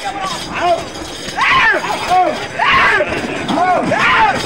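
Men shouting and calling out over and over to urge on a pair of oxen dragging a heavy stone block, with the loudest shouts about halfway through.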